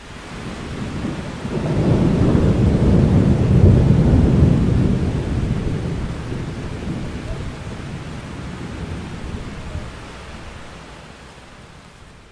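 Rolling thunder: a low rumble that swells to its loudest about four seconds in, then slowly fades away.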